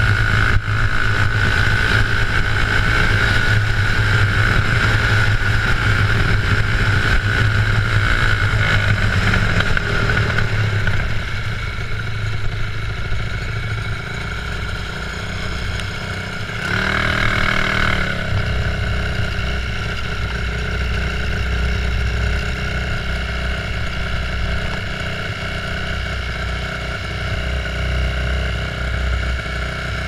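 Briggs & Stratton World Formula single-cylinder four-stroke kart engine running fast at first, then backing off about ten seconds in to a quieter, slower running near idle, with a brief louder burst a little past halfway.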